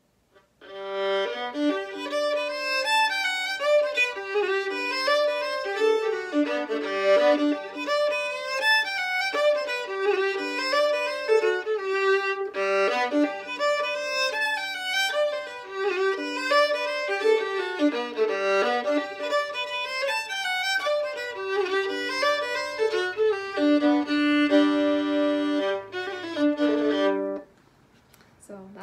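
A solo violin, the player's classical violin, bowed through an unaccompanied tune, beginning about a second in and stopping just before the end. It is the instrument chosen for a classical sound, bright and clear.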